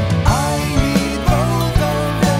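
Instrumental passage of neo-progressive rock: a lead line that bends and slides in pitch over sustained bass notes and a steady drum beat.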